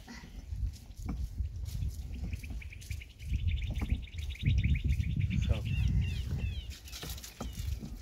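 A small bird trilling, a fast even run of high notes from about two and a half seconds in to about six seconds, over an uneven low rumble.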